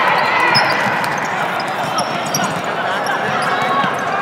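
Basketball game sounds on a hardwood gym court: a ball bouncing on the floor amid the general hubbub of players and spectators' voices.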